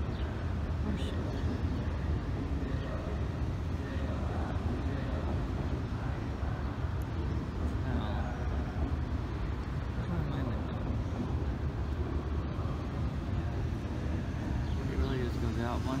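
Steady city traffic rumble from a nearby street, with faint voices in the background.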